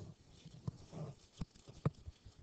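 A few faint, sharp clicks and taps, the loudest near the end, with a soft low sound about a second in.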